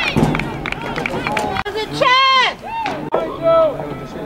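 Voices shouting across a soccer pitch, with one long, loud yell whose pitch rises and falls about two seconds in and a shorter shout near the end.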